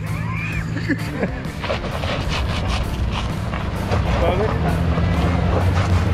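Mitsubishi Pajero engine running steadily at low revs as the 4x4 crawls over rock, under background music.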